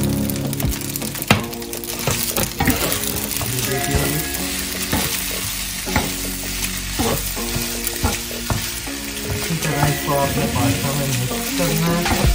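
Fusilli pasta, chicken and vegetables sizzling in a little oil in a pan while a wooden spatula stirs and tosses them. The spatula scrapes and knocks against the pan at irregular moments over the steady sizzle.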